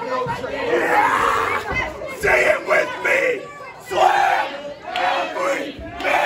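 Wrestling spectators shouting and yelling in several loud bursts, with voices overlapping.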